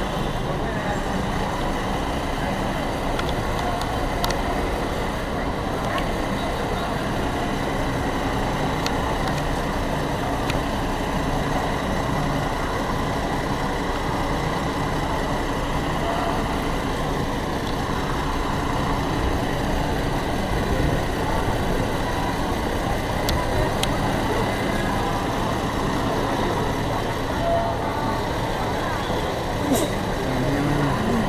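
Steady street din around a parked Renault Camiva fire truck: a vehicle engine running steadily, with people talking nearby. No siren is sounding.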